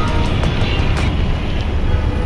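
Steady road-traffic noise from inside a jam of cars, buses and motorbikes, dominated by a loud low rumble, with background music faintly over it.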